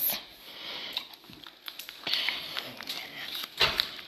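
A plastic candy wrapper crinkling and rustling in irregular spells as it is handled and pulled open, with a few sharp clicks near the end.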